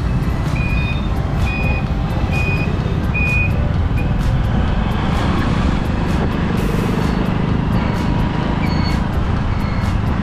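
Steady low rumble of wind and engine from a motorcycle riding through town traffic. A run of five short high beeps, a little under a second apart, sounds in the first four seconds, and two fainter beeps come near the end.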